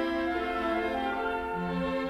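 Orchestral string accompaniment playing a short instrumental passage without voice. Held notes sound, and a lower bowed note comes in about one and a half seconds in.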